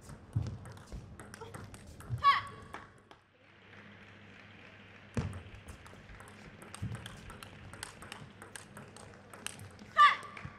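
Table tennis ball being played in a rally, with many sharp clicks off the bats and the table and a few dull thumps. A player gives a loud shout about two seconds in and another near the end, each as a point ends.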